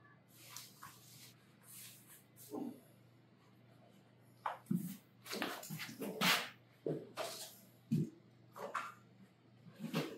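Safety-harness webbing and buckles being handled while the harness is fitted and tightened: quiet rustling of straps with scattered clicks and scrapes, busiest in the second half, plus a few short low whine-like sounds.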